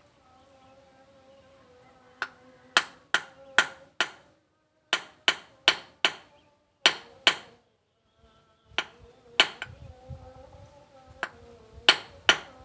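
A hand hammer striking metal on a small anvil: about a dozen sharp, ringing blows in quick groups of two to four, roughly three a second within a group, with short pauses between the groups.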